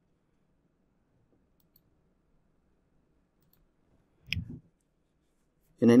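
Near silence, then a single sharp computer mouse click about four seconds in, with a short low voiced sound just after it; it is the click on the button that moves the open position's stops to break even.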